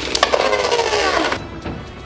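Two Beyblade Burst spinning tops whirring and clattering against each other and the plastic stadium wall just after launch, with rapid clicks of collisions. Their whir falls in pitch over the first second and a half, then fades.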